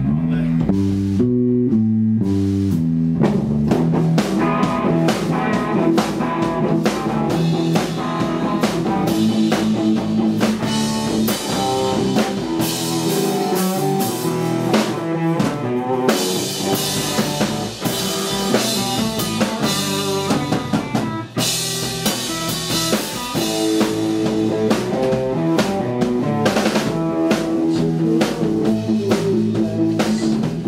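A live rock band of electric guitar and drum kit playing. A guitar riff sounds alone for about the first three seconds, then the drums come in and the two play on together.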